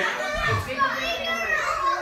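Young children's high-pitched voices, chattering and calling out.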